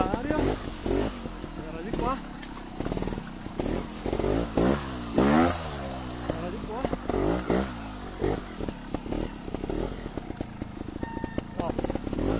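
Scorpa trials motorcycle engine being blipped again and again as the bike is ridden slowly over rocky, muddy ground, the revs rising and falling in short bursts. The biggest burst of revs comes about five seconds in.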